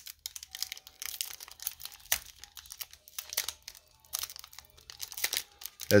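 Foil Pokémon booster pack wrapper being worked open by hand: irregular crinkling and tearing with short pauses, the tightly sealed pack resisting the pull.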